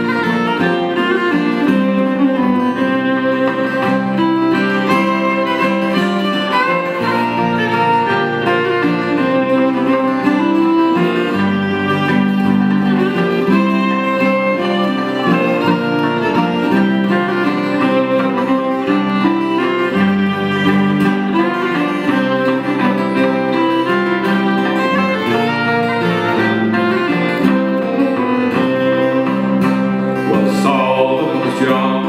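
Instrumental introduction to an Irish folk ballad: a strummed acoustic guitar with a fiddle playing the melody in long held notes, ahead of the singing.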